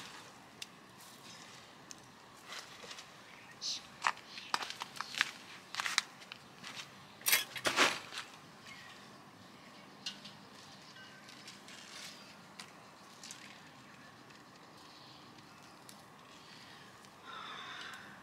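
Soft, scattered rustling and crackling of soil and dry roots as a succulent is handled and pressed into the ground by gloved hands. The sounds are busiest from about four to eight seconds in.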